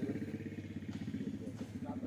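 An engine idling with a steady, rapid low chugging.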